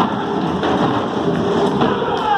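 Many hand drums, frame drums and double-headed drums, beaten together in a dense, continuous roll, with a few sharper strikes standing out.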